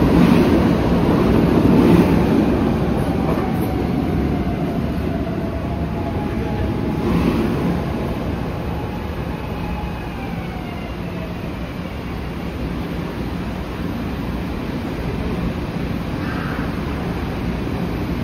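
SEPTA Market-Frankford Line subway train rolling into the station and slowing to a stop, loudest at first and easing off, with a whine that falls in pitch as it brakes.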